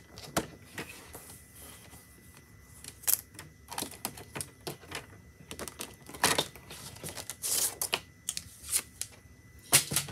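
Sliding-blade paper trimmer cutting a sheet of cardstock, with a scattering of sharp clicks and knocks from the cutter head and trimmer. There are short rustles of the stiff paper as it is moved.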